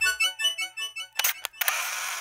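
The end of an electronic intro tune, a run of short melodic notes fading out, followed by a camera-shutter sound effect: two quick sharp clicks about a second in, then a longer shutter burst near the end.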